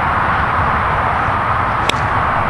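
A golf club striking a ball off the tee: one sharp click near the end of the swing, about two seconds in. Under it runs a steady rush of traffic noise from a nearby highway.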